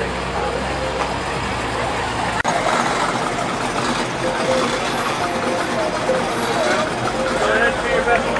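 Background chatter of people talking outdoors, with a vehicle engine idling low under it for the first couple of seconds. A brief dropout about two and a half seconds in, after which the talking carries on without the engine.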